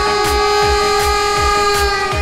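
Arghul, a double-pipe cane reed instrument with one long drone pipe, playing a reedy melody over its own steady drone. A low drum beat thumps about three times a second beneath it.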